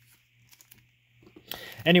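Faint ticks of trading cards being handled, then near the end a short crinkle of a foil booster pack wrapper being picked up.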